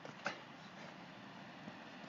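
Faint, steady background hiss, with one brief soft sound about a quarter of a second in.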